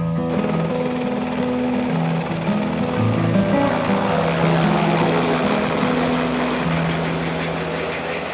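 Helicopter flying past, its rotor and engine noise swelling through the middle and fading near the end, under background music with sustained low notes.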